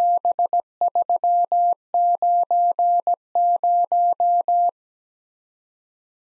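Morse code sent as a single steady-pitched sidetone beep, keyed in dots and dashes: the four characters 7, 3, 9, 0 in four groups with short gaps between them. The beeping stops about three-quarters of the way through.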